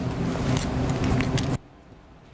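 Microphone handling noise: a low rumble with a few sharp clicks, cutting off suddenly about one and a half seconds in, as though the microphone is switched off.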